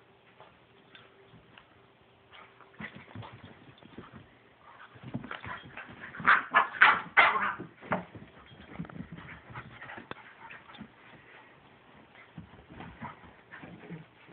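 Red-nose pit bull puppies play-fighting over a toy: soft scuffling of paws on blankets, then a run of loud, short puppy barks and growls about five to eight seconds in, dying back to scuffling.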